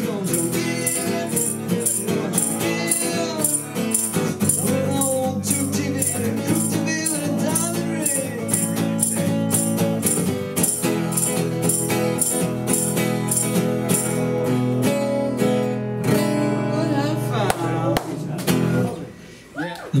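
Takamine acoustic guitar strummed in a steady blues rhythm, a crisp tick marking about two and a half beats a second, as the instrumental close of the song. The playing winds down and stops about nineteen seconds in.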